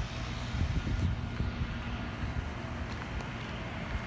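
City street traffic: car engines running with a steady low rumble and hum, a little louder for a moment about a second in.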